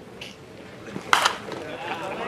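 One sharp impact of a pitched baseball arriving at home plate, a little over a second in, with faint talk of spectators around it.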